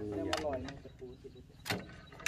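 Sharp metallic clicks of a screwdriver working on a removed excavator hydraulic pump part, the loudest near the end.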